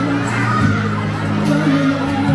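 A crowd of children chattering and shouting over background music.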